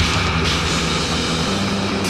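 A live hard-rock band playing without vocals: a distorted electric guitar holds a low droning chord over drums and cymbal wash.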